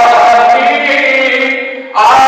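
A young man's solo voice chanting a Shia devotional recitation through a microphone, holding long melodic notes. The phrase fades out about a second and a half in, just before the next line begins.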